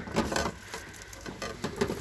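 Hard plastic Curver food storage canisters being handled and shifted on a shelf: a few light clicks and knocks, the sharpest near the start.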